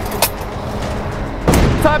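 Aluminium wheel chock clanking as it is worked out from a fire truck's front tyre, with a short click early and a heavy thump about one and a half seconds in, over a low steady background rumble.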